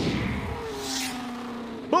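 Sound effect of a Formula One race car rushing past. A whoosh starts suddenly and swells to a peak about a second in, over a low engine tone that drops slightly in pitch and then holds.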